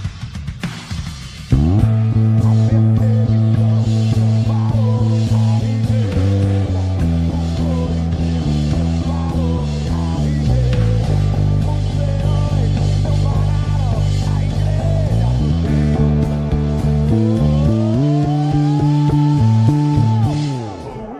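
A five-string electric bass played along with a full band backing track of a worship song. After sparse percussion clicks, the band comes in suddenly about a second and a half in, with long held low bass notes that change every few seconds; near the end a tone glides upward.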